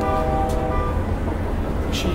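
Train horn sounding a held chord that fades out about a second in, over a train's continuous low rumble.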